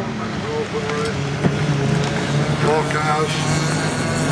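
Engines of two small autograss racing hatchbacks running hard as they race and slide through a dirt-track bend, with a public-address commentary voice over them.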